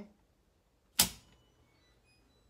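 A home panel's 200-amp main circuit breaker switched back on: one sharp, loud click about a second in, restoring power to the house.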